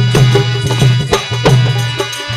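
Instrumental interlude of a Kannada folk bhajan: dholak drum strokes and tala hand cymbals keep a steady beat over a held drone.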